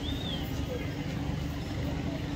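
A steady, low engine hum carries on under general outdoor noise, with a brief faint high chirp right at the start.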